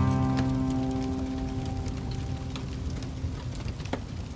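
Wood fire crackling in a fireplace, with scattered snaps and pops and one sharper pop near the end, under the last held chord of a song fading out.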